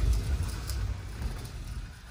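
Low rumbling and rustling from a handheld camera's microphone being handled as the camera swings round, with a couple of faint clicks. It starts abruptly just before this moment and fades by the end.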